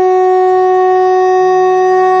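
Music: a single loud note held steady on a wind instrument, one unchanging pitch without a break.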